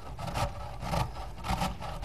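A whole head of raw cauliflower being grated on a metal box grater: repeated rasping strokes.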